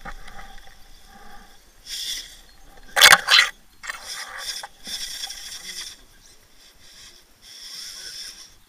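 RC rock crawler's motor and gears whining in short bursts as it drives on rock. A loud double clatter comes about three seconds in as the crawler tips over onto the rock face.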